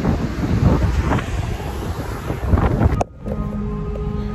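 Gusty wind buffeting the camera microphone, a heavy uneven rumble. It cuts off suddenly about three seconds in, and soft background music with held notes follows.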